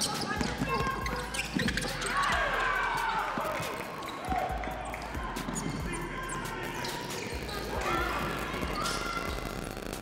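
A basketball dribbled on a hardwood gym floor during play, with shoes squeaking on the court and people shouting in the gym.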